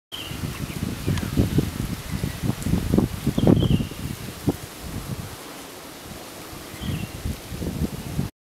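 Wind gusting against the microphone, with rustling. A bird chirps briefly three times.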